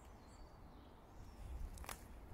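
Faint outdoor woodland ambience: a low rumble with a few distant bird chirps, and a single sharp crack near the end, like a footstep snapping a twig in leaf litter.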